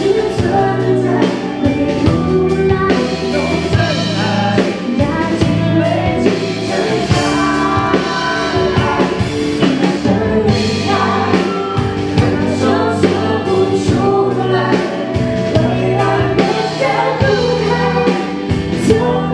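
A woman singing a Mandarin pop song live into a handheld microphone, backed by a band with drums.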